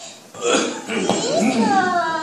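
A performer's loud vocal outburst: a rough, guttural sound, then from about halfway in a drawn-out wavering cry.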